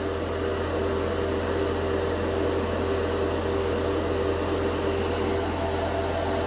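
Gravity-feed airbrush at about 15 PSI hissing as it mists chrome metal paint in light passes, the spray switching on and off several times. A spray-booth extractor fan on low hums steadily underneath.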